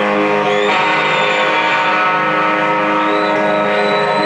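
Distorted electric guitar ringing out held chords in a live rock song intro, changing chord about a second in, with a thin high tone sustained above it.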